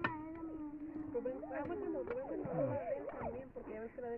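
Faint background voices of people and children talking, with a long held vocal tone through the first two seconds.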